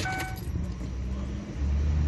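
A short electronic beep, then a steady low hum from the Ford Windstar as its ignition is switched on, growing louder about one and a half seconds in.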